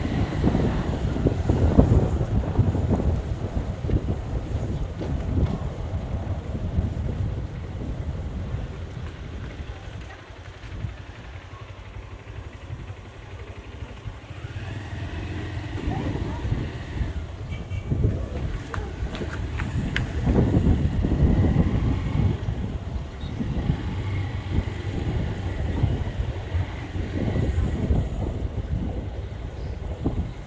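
Wind buffeting the phone's microphone, an uneven low rumble over faint street sound. It eases about ten seconds in and picks up again around twenty seconds.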